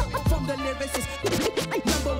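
Turntable scratching over a hip-hop beat: a record rubbed back and forth by hand, heard as quick sweeps rising and falling in pitch, thickest in the second half.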